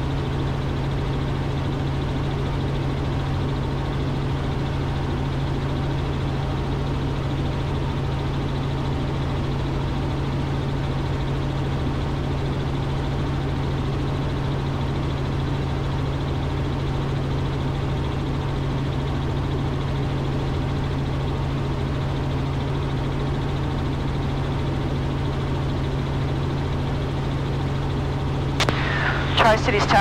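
Robinson R44 helicopter in level cruise heard from inside the cabin: the steady drone of its rotors and piston engine, with a constant low hum beneath it. A voice starts just before the end.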